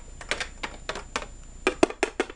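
Small hard-plastic toy figurines clicking and tapping against each other and a plastic playset, a rapid, irregular run of sharp clicks like a mock fight.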